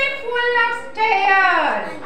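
A young child singing a line of an action song in a high voice: steady held notes, then a falling, sliding line that fades just before the end.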